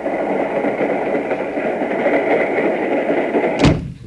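Radio sound effect of a train under way: a steady rushing rumble, ended near the end by one short, sharp knock like a door shutting.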